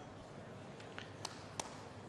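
Faint, steady indoor arena background with a few short, sharp taps a second or so in.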